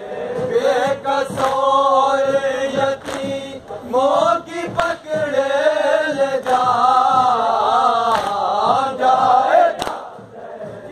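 A group of men chanting a noha, a Shia mourning lament, together in a loud, wavering melody, with a few sharp slaps heard through it.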